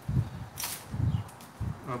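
Hands peeling the dry, papery skin off an onion, a faint crackling, with a few soft low thumps.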